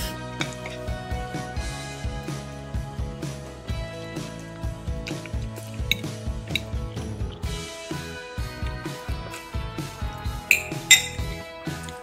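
Background music with a steady tune, over many quick clicks and clinks of a metal fork against a plate as noodles are eaten.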